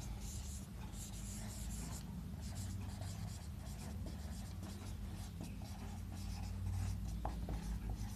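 Whiteboard marker writing on a whiteboard, the tip rubbing across the board in short strokes as a word is written out.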